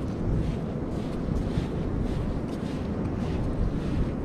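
Wind buffeting the microphone: a steady low rumble that swells and dips slightly.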